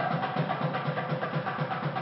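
Percussion-heavy music: drums beating a fast, steady rhythm under a dense wash of higher sound.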